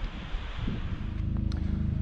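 Wind buffeting the microphone. About a second in, a steady low engine hum with a fast regular flutter takes over: an engine idling.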